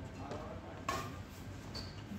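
A badminton racket strikes a shuttlecock once with a sharp crack about a second in, in a reverberant hall. Near the end comes a brief high squeak.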